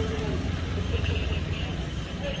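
Outdoor street background: a steady low rumble, typical of traffic or an idling vehicle, with faint voices in the distance.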